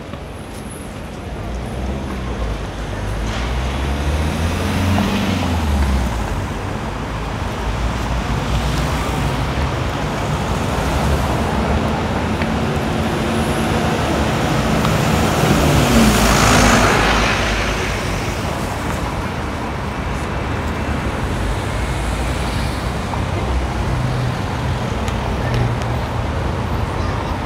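Street traffic with a double-decker bus pulling past close by: its engine note rises and then falls, loudest about sixteen seconds in. Another vehicle's engine passes a few seconds in.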